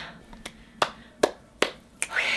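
A child's plastic tricycle rolling along a hard corridor floor, its wheels giving four sharp, evenly spaced clicks, about two and a half a second.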